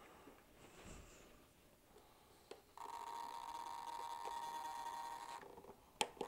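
A steady, high-pitched electric whine holding one tone. It starts about three seconds in, just after a soft click, and cuts off suddenly about two and a half seconds later.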